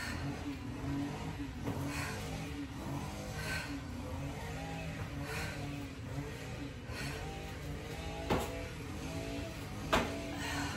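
Steady low hum with faint music-like notes, under light scuffs of sneakers on concrete from exercise moves. Two sharp knocks come near the end, the last and loudest as the hands drop to the concrete for a burpee.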